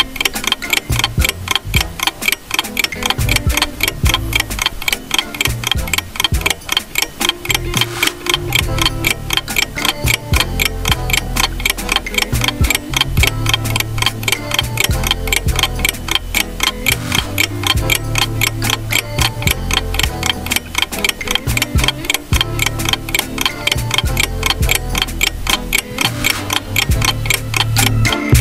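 Fast, even clock ticking from a countdown-timer sound effect, over background music with a low bass line.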